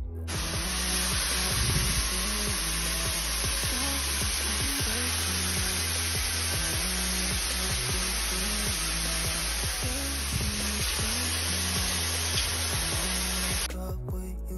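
Shower running: water spraying from an overhead shower head in a steady hiss, which starts just after the mixer lever is turned and cuts off near the end. Background music with a steady beat plays underneath.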